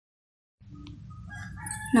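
Faint low hum fading in after about half a second, with scattered faint pitched calls over it and a short click near the end, then a voice begins.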